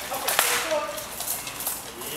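A single sharp crack a little under half a second in: an SCA practice weapon striking armour during sparring.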